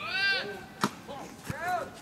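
A baseball bat cracks sharply against a pitched ball a little under a second in, with a second knock about half a second later. Shouts ring out as the pitch is thrown and again just after the hit.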